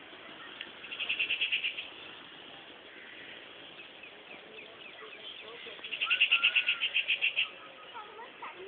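An animal call: a rapid, high-pitched pulsed trill of about ten pulses a second, heard twice, briefly about a second in and longer near the end, with scattered short chirps between the bouts.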